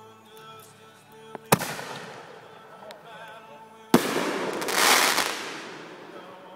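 Consumer fireworks going off: a sharp bang about one and a half seconds in, then a second bang near four seconds followed by a loud hissing burst that swells and fades over about two seconds.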